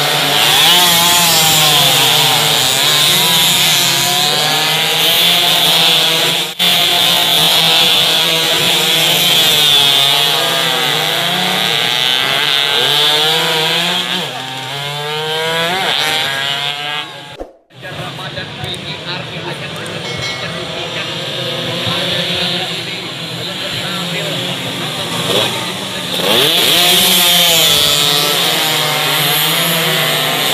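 Several two-stroke 120–130 cc underbone racing motorcycles revving hard as they pass, their high, buzzing engine notes rising and falling as riders shift and brake through a chicane. The sound breaks off for an instant about two-thirds of the way through.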